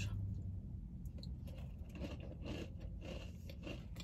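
A person faintly chewing a dairy-free chocolate chip cookie, with small irregular crunches.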